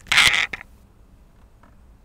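A short, loud creak-like scrape lasting about half a second at the start, followed by a few faint clicks of a computer keyboard.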